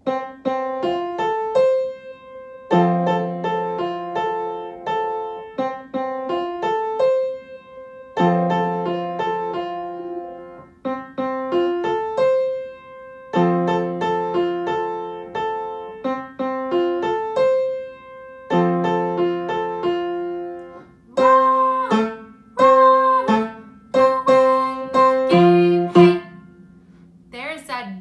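Piano playing a short beginner piece with both hands, a bass note under a melody, in phrases of about five seconds separated by brief pauses. Near the end comes a louder passage of short, detached notes, slurs ending in staccato.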